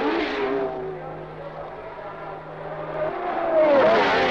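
1970s Formula One race cars passing at speed: one engine's note drops and fades in the first second, then another car approaches and goes by near the end, its pitch rising and then falling as it passes.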